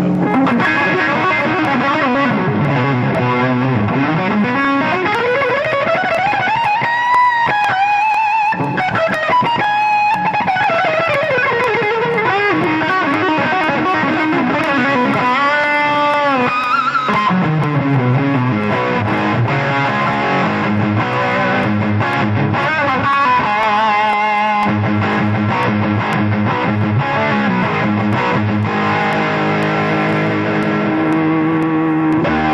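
Electric guitar played through a homemade FET analog pedal modelled on a Marshall Plexi, giving an overdriven crunch tone. A lead line climbs steadily in pitch and comes back down, a bent note follows, and lower sustained chords take over near the end.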